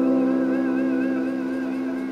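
Electric guitar, a Yamaha Pacifica, holding a sustained chord that rings and slowly fades, its upper notes wavering with vibrato.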